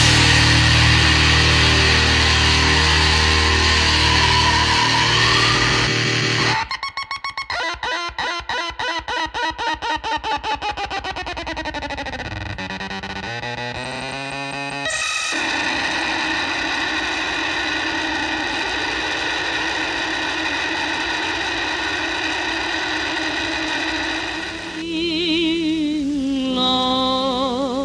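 Distorted noise-rock ending of a powerviolence recording: a held, heavily distorted guitar and bass chord, then from about six seconds in a rapid pulsing effect, about four or five pulses a second, with a bending pitch. From about fifteen seconds in it settles into a steady distorted noise drone with held feedback-like tones, and wavering tones begin near the end.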